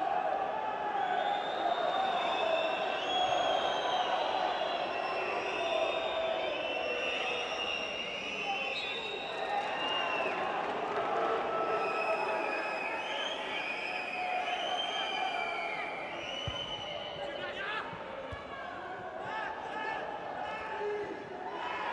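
Players and staff shouting and calling to each other across the pitch, heard clearly in an empty stadium with no crowd noise, with a few sharp football kicks near the end.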